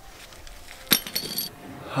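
A single sharp metallic clink about a second in, ringing briefly, against faint outdoor background.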